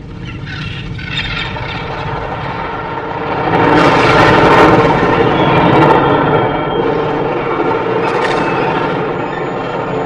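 Film sound design of a giant mobile city on the move: a deep mechanical rumble of engines and grinding machinery that swells to its loudest about four seconds in and stays loud.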